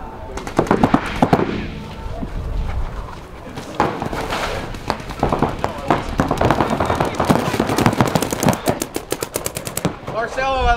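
Compressed-air paintball markers firing in irregular bursts from several players, ending in a fast, even string of shots near the end.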